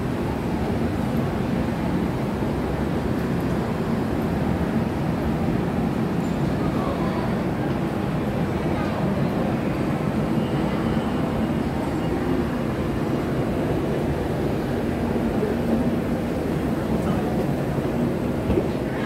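Steady low rumble of indoor shopping-mall ambience, with a murmur of distant voices mixed in.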